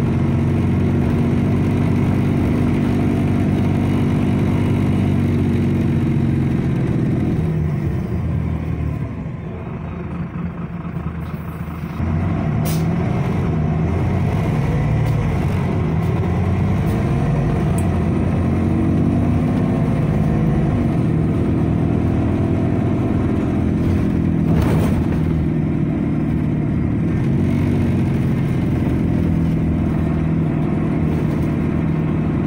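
Irisbus Citelis city bus engine and drivetrain heard from inside the cabin, its pitch rising and falling as the bus speeds up and slows. It drops quieter for a few seconds about a third of the way in, then builds again. Two short, sharp clicks stand out, one just after the quiet spell and one later on.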